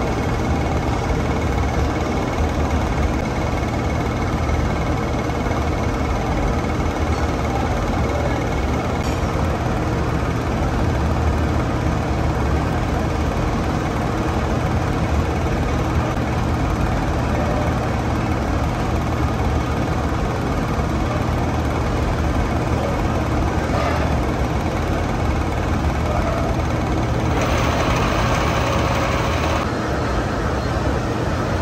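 A heavy gear-cutting machine running with a steady low drone. A hiss joins for about two seconds near the end.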